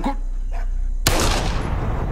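A single loud bang about a second in, dying away slowly into a low rumble, after a low steady drone.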